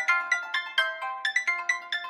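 Gayageum (Korean plucked zither) duo playing a quick melody of plucked notes, about six a second, each ringing briefly and dying away.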